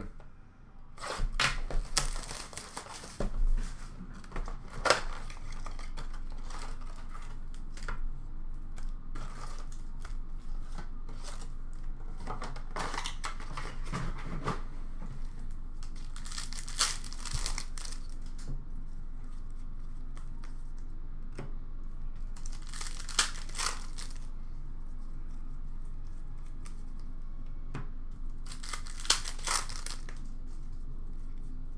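Hockey card pack wrappers being torn open and crinkled by hand, in short bursts every few seconds.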